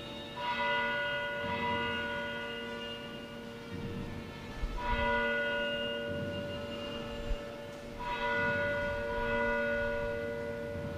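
A church bell tolling slowly: three strikes about three to four seconds apart, each leaving a long ringing hum that fades slowly. It is a funeral toll.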